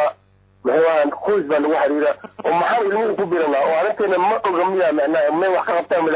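A person's voice talking in continuous phrases after a brief pause at the start, with a thin, radio-like sound.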